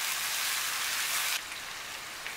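Prawns sizzling as they fry in hot mustard oil in a wok: an even, hissing sizzle that drops to a softer level about one and a half seconds in.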